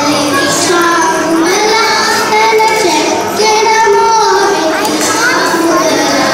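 A group of young girls singing a Carnatic vocal piece together into microphones, the melody moving through held notes that bend and glide.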